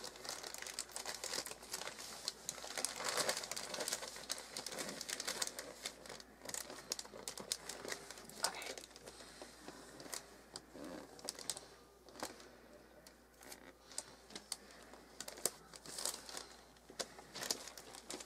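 Christmas wrapping paper crinkling and rustling as a gift box is wrapped and its sides folded and pressed down. The sound comes as irregular crackles, busiest in the first few seconds and sparser after.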